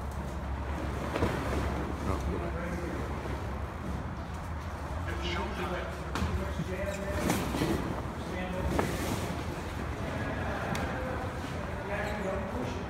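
Heavy tarp being pulled and tugged over a load, with rustling and a few dull thumps, against a steady low hum and indistinct voices.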